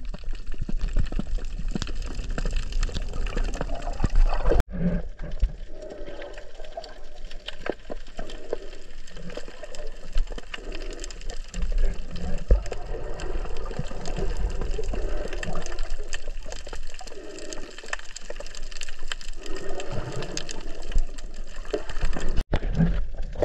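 Water sloshing and bubbling, heard underwater, with a low rumble and a brief drop-out about four and a half seconds in.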